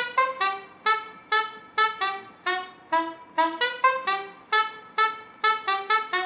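A tune of short, detached saxophone-like notes, a little over two a second, each note starting sharply and fading quickly.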